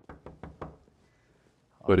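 Knocking on a door: four knocks in quick succession.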